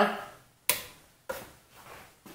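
Sharp click of a bench DC power supply being switched on to power a hot-wire foam cutter, followed by a fainter click about half a second later.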